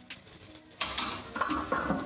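Metallic clinks from about a second in, as a stainless steel cooking pot and its lid are handled. A short pitched sound comes near the end.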